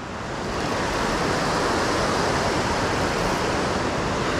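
Steady rushing noise of river water below a dam spillway, mixed with wind, swelling over the first second and then holding even.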